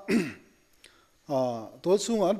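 A person clearing their throat once, a brief rasping burst that drops in pitch, right at the start, followed after a short pause by a short voiced hum just before talk resumes.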